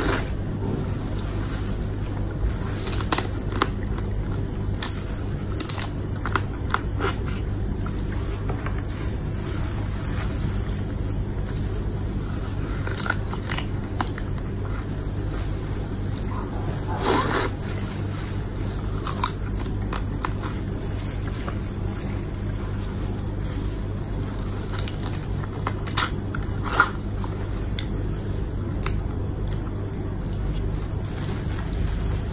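A person eating spicy braised crab pieces close to the microphone: scattered bites and crunches of shell with wet squishing, over a steady low hum. A couple of louder crunches come just past halfway and near the end.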